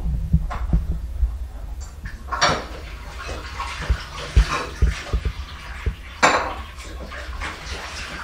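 Dishes being washed by hand in a sink: water splashing with clinks and knocks of crockery, and two louder splashing rushes, about two and a half and six seconds in.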